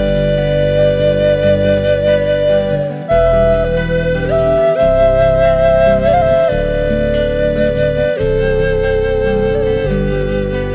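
Slow instrumental new-age music: a flute plays a melody of long held notes, with a few small bends in pitch, over sustained low chords that change every couple of seconds.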